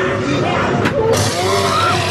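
A chainsaw starts up and revs loudly about a second in, a dense rasping noise that carries on, just after a sharp crack.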